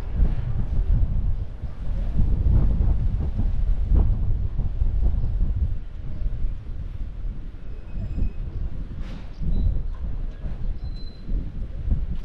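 Wind buffeting the microphone: a loud, uneven low rumble that swells and eases in gusts.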